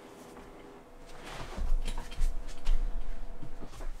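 A person getting up and moving about: soft low thumps of footsteps and scattered knocks and rustles of handling, starting about a second in after a quiet moment with a faint steady hum.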